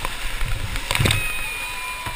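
Whitewater rapids rushing around a kayak, with a loud splash of water breaking over the kayak about a second in.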